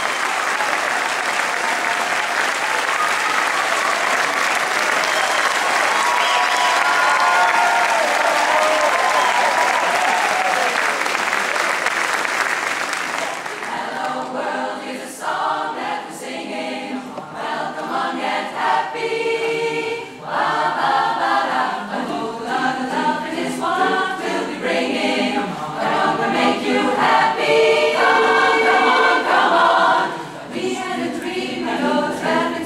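Audience applause for about the first thirteen seconds, then a women's barbershop chorus starts singing a cappella in close harmony.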